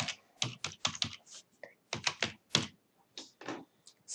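Typing on a computer keyboard: a quick, irregular run of keystrokes, with a short pause shortly before the end.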